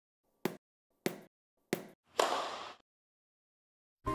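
Three short, sharp taps about 0.6 s apart, then a louder hit about two seconds in that rings on for about half a second: sound-effect hits for an animated logo intro.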